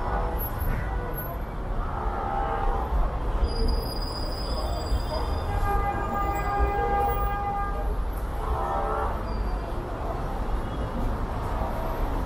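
Street traffic on a busy city avenue: a steady low rumble, with a long, steady, horn-like tone held for about two seconds near the middle.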